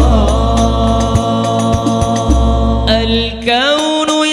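Hadroh al-Banjari vocalists chanting sholawat together on long held notes, with a few frame drum and bass drum strikes. Near the end a single voice sings a winding, ornamented line.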